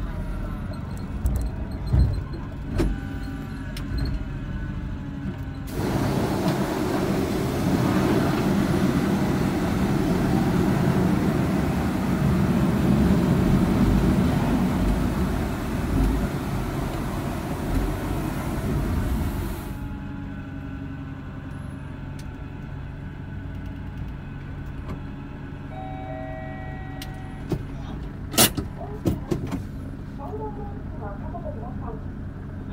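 Inside a kei van's cabin, the engine runs at low speed as the van creeps forward. About six seconds in, a loud, steady hiss of water jets spraying against the underside starts suddenly, then cuts off suddenly after about fourteen seconds. A few sharp clicks come near the end as the van stops.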